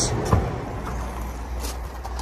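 Car tailgate being unlatched and swung up open, with a single latch clunk about a third of a second in, over a steady low rumble.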